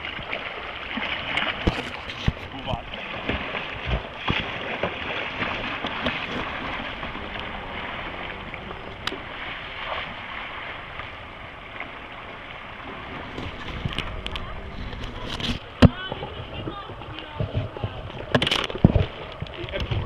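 Kayaks and paddles splashing through fast, rough river water, with rushing water throughout. Two sharp knocks stand out in the last few seconds.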